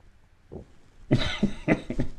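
A man laughing in a run of short, loud, breathy bursts, starting about a second in after a small first burst.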